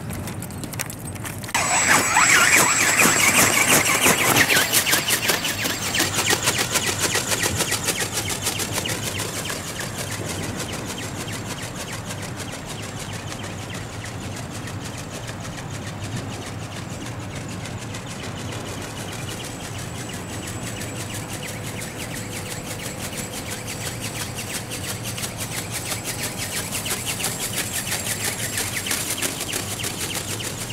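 Battery-electric motor and gear drive of a large radio-controlled dragon ornithopter powering up about a second and a half in, with a fast, even clatter from the flapping wings and a thin high whine. It is loudest for the first few seconds as the machine takes off, fades as it flies away, and grows louder again near the end.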